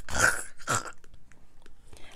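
Breathy laughter: two short, airy bursts of laughing in the first second.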